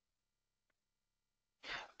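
Near silence, then a short intake of breath near the end, just before speech.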